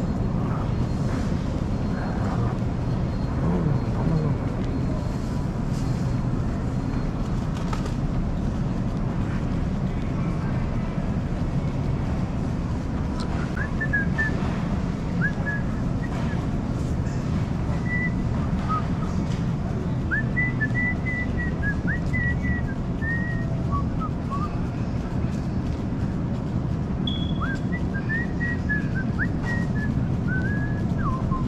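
Steady low rumble of a shopping cart and camera moving across a store floor, with short high whistled chirps scattered through the second half.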